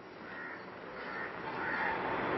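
Bird calls in the background over a noisy hiss that grows steadily louder.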